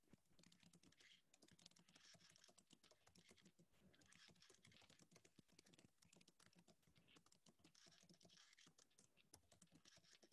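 Near silence with faint, rapid, irregular clicking of typing on a computer keyboard.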